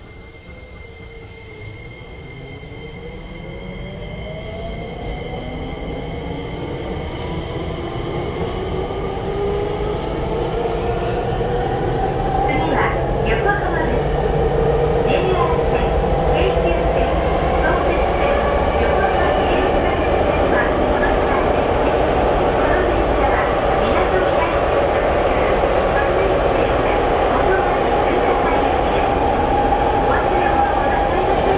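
Hitachi IGBT-VVVF inverter and traction motors of a Tokyo Metro 7000 series train, heard from inside the car, whining upward in pitch through several tones as the train accelerates. The sound grows steadily louder over about twelve seconds, then settles into steady running noise with a few sharp clicks from the rails.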